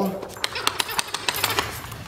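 A quick, irregular run of light clicks and taps, starting about half a second in and stopping just before the end, as an excited small dog scrabbles at a boxed plastic toy ball: claws ticking on a hardwood floor and the box's plastic packaging rattling under its nose.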